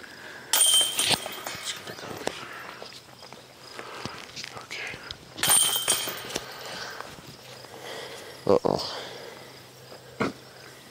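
Metal chains of a disc golf basket rattling and jingling twice, about five seconds apart, as discs strike them, each rattle fading over about a second. A brief low knock comes near the end.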